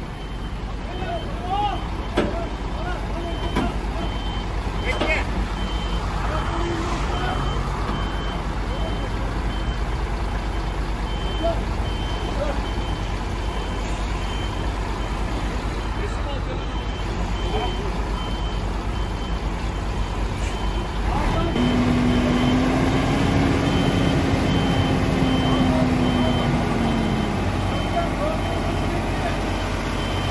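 Heavy truck engines running at idle, with a vehicle's electronic warning beeper sounding short, evenly spaced beeps throughout. About two-thirds of the way through, an engine's note rises and holds for several seconds, then falls away.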